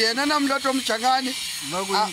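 Only speech: men's voices talking close to the phone's microphone.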